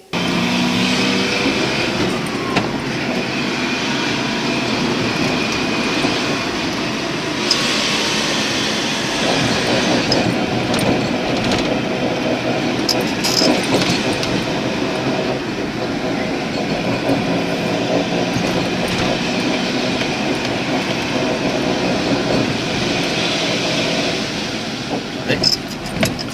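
Car driving on an asphalt road, heard from inside the cabin: steady engine and tyre road noise, with a few brief clicks or knocks.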